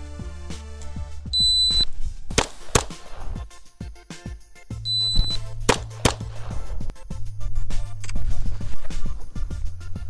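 A shot timer beeps, and shortly after a Girsan MC28 SA 9mm pistol fires two quick shots about a third of a second apart. This happens twice, over background music with a steady bass line.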